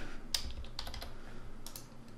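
Computer keyboard keys and a mouse clicked while a number is typed into a field: about five separate sharp clicks spread over the two seconds.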